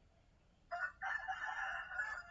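A faint animal call about two-thirds of a second in: a short note, then a longer held note lasting over a second.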